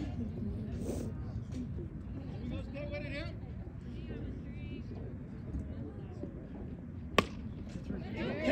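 A single sharp crack of a softball bat hitting the ball, about seven seconds in, over faint distant voices.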